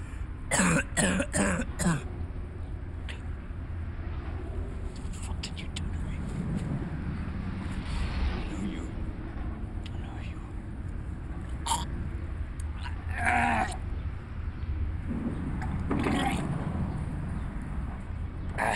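A man coughing hard: a quick run of four coughs about a second in, then scattered coughs and strained breaths later on, over a low steady hum. The coughs come from a beaten man with a bloodied face lying on the ground.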